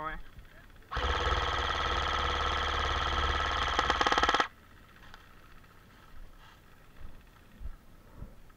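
Airsoft electric rifle firing one long full-auto burst of about three and a half seconds: a steady mechanical buzz from the motor and gearbox cycling rapidly. It cuts off suddenly.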